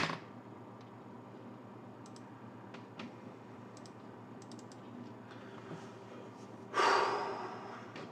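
A man's loud breathy exhale, like a sigh, about seven seconds in, fading over about a second. Before it, only quiet room tone with a few faint clicks.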